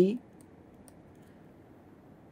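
The end of a spoken word at the very start, then quiet with a few faint clicks of a stylus tapping and writing on a tablet screen.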